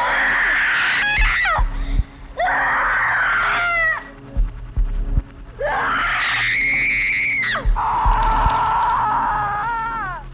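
A person in a horror film's soundtrack screaming again and again: about five long, drawn-out screams with brief breaks between them, over the film's music.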